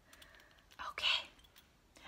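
A woman's short, quiet breathy voice sound about a second in, with a few faint clicks around it.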